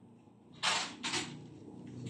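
Brief rustling handling noise as an acoustic guitar is lifted and moved: a short burst about half a second in and a weaker one near one second, then faint background.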